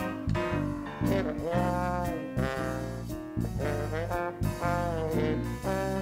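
Small jazz band playing swing live: trombone, trumpet and saxophone carry the tune over piano, guitar, bass and drums, with the horn notes bending and sliding in pitch.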